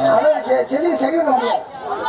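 Speech only: a stage performer's voice amplified through a microphone.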